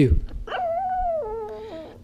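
Chihuahua howling in a wavering, talk-like whine from about half a second in, its pitch stepping down over a second and a half: the dog's trained attempt to say "I love you" back.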